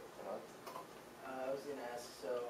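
Indistinct speech in a room, with a few sharp clicks about half a second in, from a laptop being operated.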